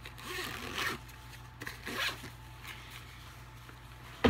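Zipper on a fabric bag being pulled closed in two or three short rasping runs within the first couple of seconds.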